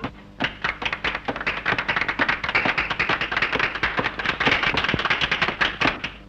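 Applause: many hands clapping in a quick, dense burst that stops abruptly.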